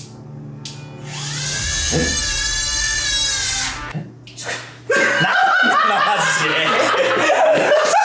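A click, then the small electric motor of a battery-powered novelty toy whirring like a drill for about three seconds, its pitch rising and then wavering. From about five seconds in, background music with laughter takes over.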